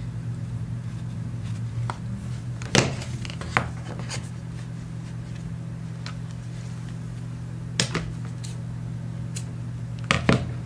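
Soft handling sounds of butcher's twine being unwound from its card and drawn across paper, with a few sharp taps and clicks, the loudest about three seconds in and another near the end, over a steady low hum.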